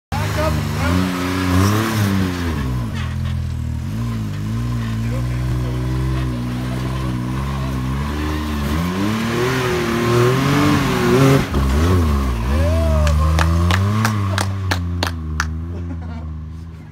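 Can-Am Maverick X3 X rc's turbocharged three-cylinder engine revving up and down repeatedly under load as the machine crawls up a steep rock ledge. In the last couple of seconds there is a quick series of sharp knocks.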